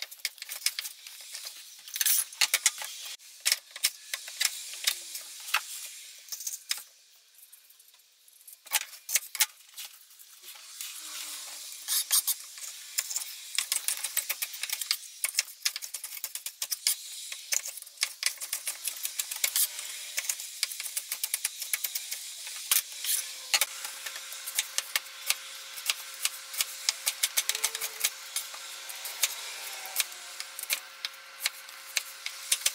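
Chef's knife chopping produce on a plastic cutting board: quick, irregular knocks of the blade hitting the board, first through apple, then peppers, then onion, with a short lull about seven seconds in.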